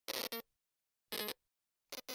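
Two short, faint electronic glitch blips about a second apart, each a brief buzzy burst with a steady tone in it, from the intro title animation, with a third tiny blip near the end.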